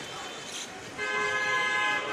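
A vehicle horn sounds a single steady held note starting about halfway through, the loudest sound here, over street background noise.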